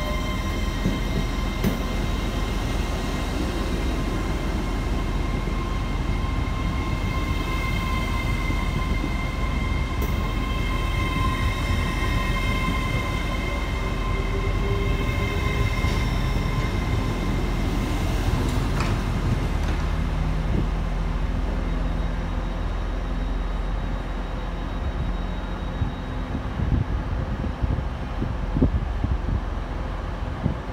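LNER Azuma high-speed train pulling slowly out along the platform, with a steady high whine over the rumble of its wheels on the track. The whine dies away about two-thirds of the way through as the train leaves, and a lower, uneven rumble remains.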